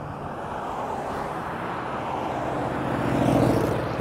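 Road traffic passing, with a motorcycle and cars going by; the tyre and engine noise swells to its loudest about three seconds in, then eases.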